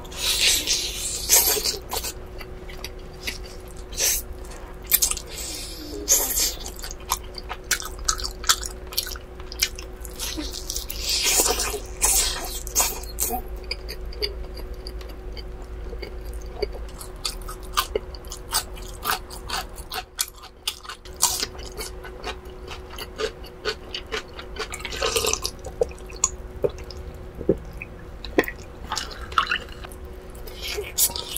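Close-miked eating of roast chicken off the bone: wet mouth clicks and smacks of biting and chewing, with a few longer slurping bursts, over a faint steady hum.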